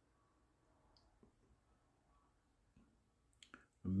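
Near silence, with two or three faint clicks near the end, just before a man's voice starts.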